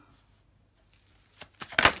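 Tarot cards being handled. After a quiet stretch, about a second and a half in, there is a short burst of cards riffling and slapping together as a card is pulled from the deck.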